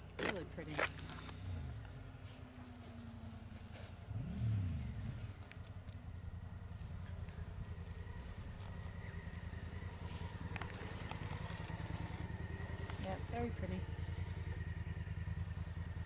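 A motor vehicle's engine idling nearby: a steady low drone that grows gradually louder from about four seconds in, with a faint steady whine above it in the second half.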